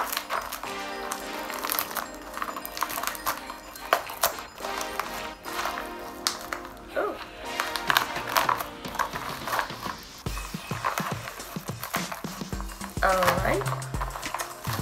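Background music, with a low beat from about ten seconds in, over the crinkling and rustling of a metallic plastic bubble mailer being opened and handled.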